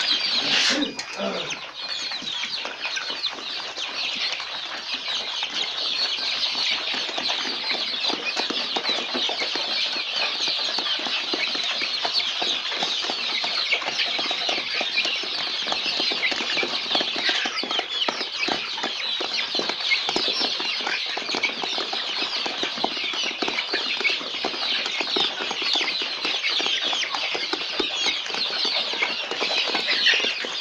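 A coop-full of young chickens cheeping and peeping all at once, a dense, steady chorus of many overlapping high calls.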